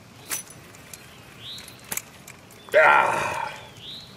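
A man's loud, breathy exclamation about three seconds in, lasting about a second and fading out, as he sets the hook on a fish. Earlier there are a few faint clicks and a bird's short rising-and-falling chirp.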